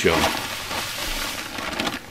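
Dry sand pouring from a bag into a plastic mixing tub, a steady hiss.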